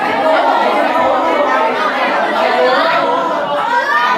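Many voices talking over one another: a class of teenage students chattering in a large room.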